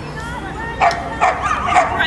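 A dog barking: several sharp barks in quick succession in the second half.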